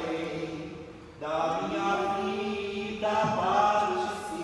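Voices singing a slow liturgical chant without accompaniment, in long held phrases, with a short break about a second in before the next phrase comes in louder.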